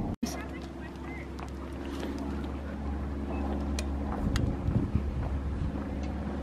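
Wind buffeting the camera microphone outdoors: a steady low rumble with a few faint clicks scattered through it.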